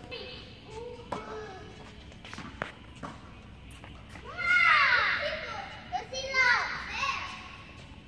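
A child's high voice calling out twice, about halfway through and again near the end, echoing in a large indoor hall. A few sharp knocks of tennis balls on racket and court come before it.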